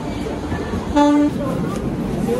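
Passenger train rolling slowly alongside a station platform amid crowd noise, with a short, loud horn toot about a second in.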